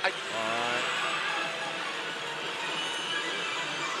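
Steady din of a pachinko and pachislot parlour: the sounds and music of many machines blurred into one even noise.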